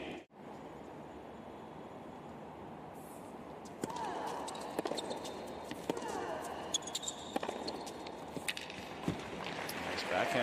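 Tennis rally on a hard court: sharp racket strikes on the ball roughly once a second, starting about four seconds in, with the players' footsteps, over low crowd ambience.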